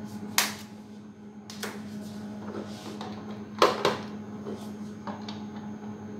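Micropipette and plastic tube handling, with a handful of sharp clicks and taps (the loudest a close pair about halfway through), as a bacterial cell pellet is pipetted up and down to resuspend it in buffer. A steady low electrical hum runs underneath.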